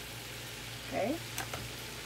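Ground venison with onion and bell pepper frying in a stainless steel wok: a steady, even sizzle. A faint click sounds about a second and a half in.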